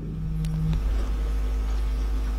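Steady low hum with no speech, a pause in a man's talk into a microphone; a faint steady tone stops under a second in.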